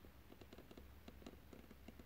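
Near silence with faint handling noise: a quick, uneven run of small clicks and scratches, most of them in the middle and later part, over a low hum.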